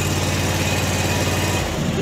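Zero-turn mower's 25 hp Kawasaki V-twin engine running steadily just after a cold start on a jump pack with full choke, then stopping about one and a half seconds in.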